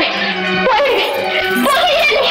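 Film background score holding sustained chords, with a woman's voice speaking over it in short phrases that rise and fall in pitch.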